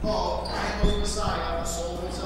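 A man speaking in a large hall, with a short low thump a little under a second in, over a steady low hum.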